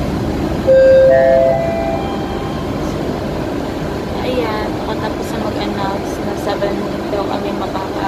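A short electronic chime of several clear notes stepping upward in pitch, the loudest sound here, like a public-address attention chime, over the steady hum of a busy waiting hall; voices follow in the second half.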